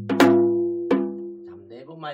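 Janggu (Korean hourglass drum) struck twice in the gutgeori basic rhythm: a sharp stroke about a quarter second in, then a lighter one near the middle, with the low drumhead ringing on and fading between them. A man's voice begins near the end.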